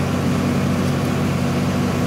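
John Deere 4630 tractor's turbocharged six-cylinder diesel engine running at a steady speed, heard from inside the cab as a constant drone.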